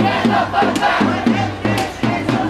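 A marching protest crowd chanting together in a steady rhythm, with sharp hits about once a second.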